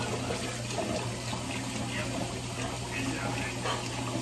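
Water running steadily into a kitchen sink, over a constant low hum.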